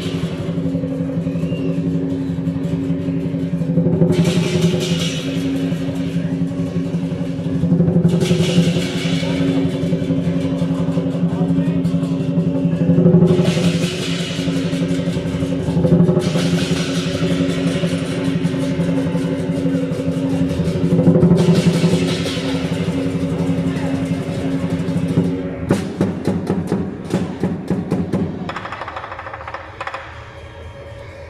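Lion dance percussion: drum, gong and cymbals playing together under a steady ringing tone, with cymbal crashes every few seconds and a quick run of drumbeats near the end.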